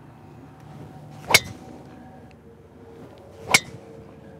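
A golf driver striking a teed-up ball: two sharp cracks with a brief metallic ring, about two seconds apart. The ball is struck solidly.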